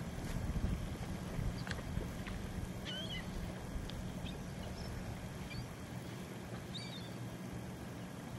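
A few faint, short, high bird calls, chirps about three seconds in and again between about five and seven seconds, over a steady low rumble.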